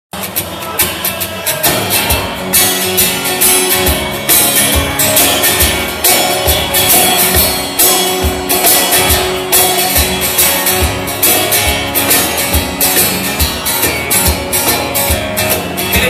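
Instrumental intro of a live country song: a strummed acoustic guitar with hand percussion keeping a steady beat.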